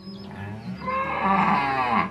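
A bovine animal mooing: one long moo that builds from about half a second in and is loudest in its second half, over soft background music.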